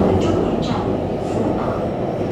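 Steady interior running noise of a Shenzhen Metro Line 3 train in motion, heard from inside the passenger car, with a deep, even rumble.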